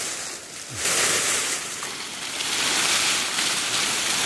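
Rustling of cut, leafy tree branches being handled and pulled, in rushing swells that rise and fall every second or two.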